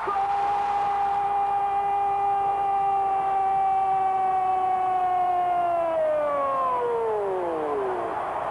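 A TV football commentator's long held goal cry: one high-pitched shouted 'gol' sustained for about seven seconds, sliding down in pitch near the end.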